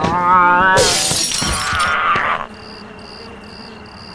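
A wavering, drawn-out vocal cry, then glass shattering about a second in and crashing for a second or so. After that, a quiet background with faint short chirps repeating about twice a second.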